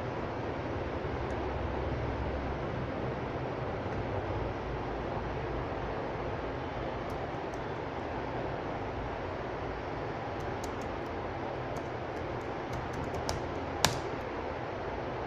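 Steady background hiss, with a scattered run of light clicks from a laptop's keys and touchpad over the last few seconds, ending in one sharper click.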